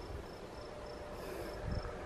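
Crickets chirping in a steady, even pulse of high notes, about three a second, over low rumbles and thumps.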